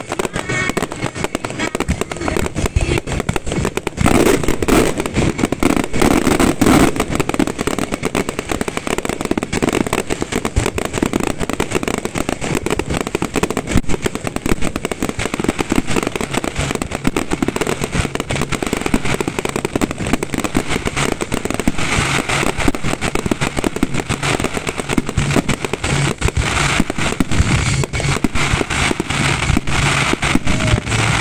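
A fireworks display going off in a continuous barrage: close-packed bangs of bursting shells mixed with the crackling of crackle stars. It is heaviest from about four seconds in, with a burst of sharper crackling a little past the twenty-second mark.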